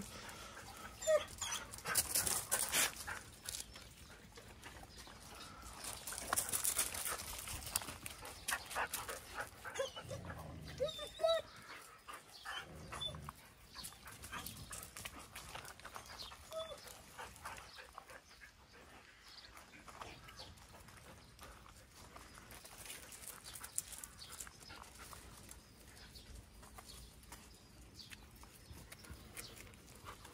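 Dogs moving about a gravel yard, making scattered rustling and scuffling sounds, with a dog tearing at and chewing grass near the start. The sounds are busiest in roughly the first dozen seconds and quieter after.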